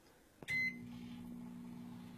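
A microwave oven starting up: a click and a short high beep from the start button about half a second in, then the steady low hum of the microwave running as it begins a one-minute heating cycle.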